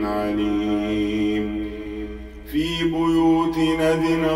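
Melodic Quran recitation: a single voice drawing out long, held notes, with a short break about two and a half seconds in before the next held note begins.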